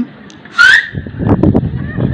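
A short, high-pitched rising cry about half a second in, as loud as the speech around it, followed by a brief stretch of indistinct noise.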